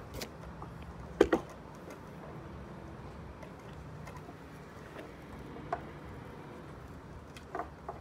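A few sharp knocks from the hanging wooden climbing obstacle as a climber moves along it, the loudest a quick double knock about a second in, over a low steady outdoor background.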